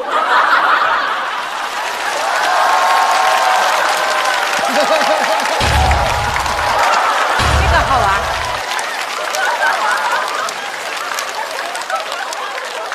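Studio audience laughing and applauding hard right after a punchline. Two deep booming hits from a sound effect come about six and seven and a half seconds in, each lasting about a second.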